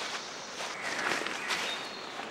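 Footsteps crunching through dry leaf litter and twigs on a forest floor, several steps in a row.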